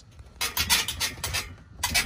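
Steel frame joints of a Karavan jet-ski trailer squeaking and rubbing as the loaded trailer is rocked: short rasping scrapes, several a second, starting about half a second in. It is unlubricated metal rubbing on metal at the bolted cross-member and bracket connections, the source of the trailer's noise.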